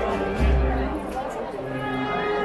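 Wind band playing a processional march: held chords from brass and woodwinds over a deep low part, with crowd chatter underneath.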